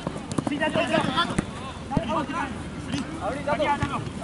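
Players shouting to each other across a football pitch during play, with several sharp knocks of the ball being kicked.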